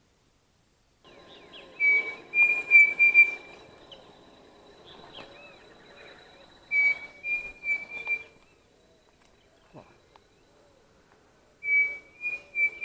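Pavonine cuckoo (Dromococcyx pavoninus) song: three whistled phrases about five seconds apart. Each phrase is a clear note followed by three or four shorter whistles at nearly the same pitch, slightly higher, with the last phrase running on past the end.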